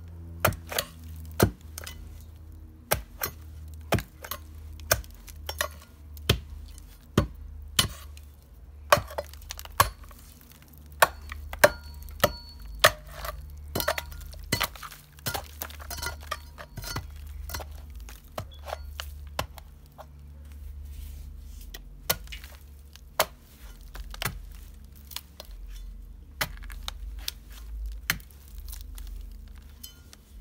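A hatchet chopping repeatedly into the decayed wood of a cherimoya trunk, sharp irregular strokes often more than one a second, each with a short crack or knock, over a low steady hum.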